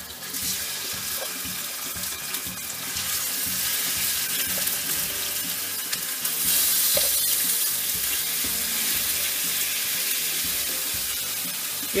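Pork cubes sizzling in hot oil in a frying pan as pieces are laid in by hand; the sizzle grows louder in steps as the pan fills.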